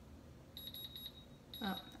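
Electronic beeping from the control panel of a Pampered Chef Deluxe Cooking Blender as its settings are switched: a high tone with a few quick beeps starting about half a second in, and another beep near the end.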